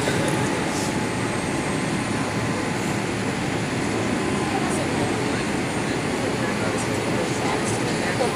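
Steady cabin noise inside a Boeing 787-8 Dreamliner on approach: an even rush of engine and airflow noise, with a faint steady hum under it.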